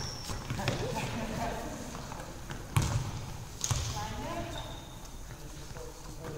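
Handball play in an echoing sports hall: two loud thuds from the ball, about three seconds in and again just under a second later, among players' calls and shouts.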